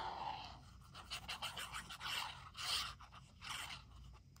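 Faint, irregular scraping and rustling of glue being spread onto paper during hand crafting, in a string of short strokes starting about a second in.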